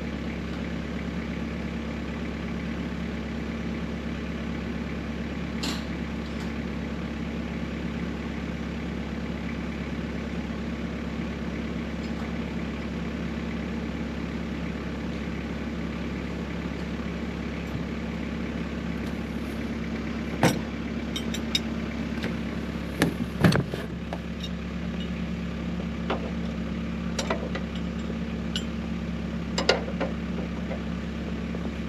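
Tracked snowblower's engine idling steadily. Several sharp knocks and clanks come in the second half, the loudest a cluster about 23 seconds in.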